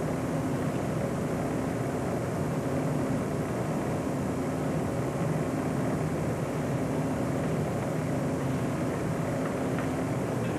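A steady low hum with an even hiss over it and no distinct events.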